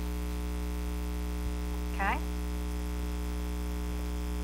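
Steady electrical mains hum, a low drone with a ladder of even overtones that does not change.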